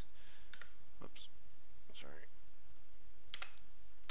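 A handful of sharp, scattered clicks from a computer mouse and keyboard as a copy command is entered, over a steady low background noise.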